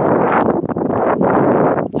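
Wind blowing across the camera's microphone: a loud, uneven rush of wind noise.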